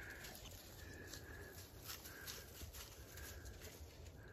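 Faint short beeps from a bird dog's beeper collar in point mode, one tone about every second, signalling that the dog is standing on point.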